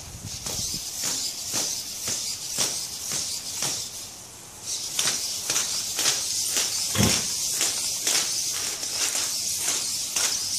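3D-printed plastic feet of a hexapod robot tapping on concrete as it walks in a fast gait, about three taps a second, with one heavier knock about seven seconds in as the robot stumbles. A steady high hiss runs behind the taps and drops out briefly around four seconds.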